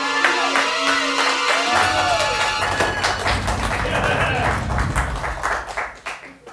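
A dramatic music sting with a deep bass swell under studio-audience applause and voices calling out. The applause builds through the middle and everything cuts off suddenly at the end.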